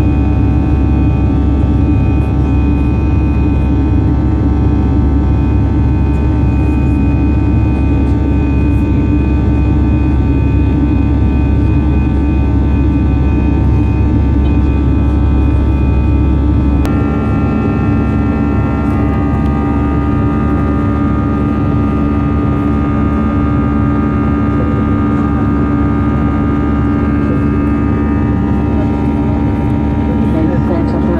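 Steady in-cabin drone of an Airbus A319-111 in the climb: CFM56 engine hum with several steady tones over a low rumble of airflow. About halfway through the tones shift abruptly and the noise drops slightly, then runs steady again.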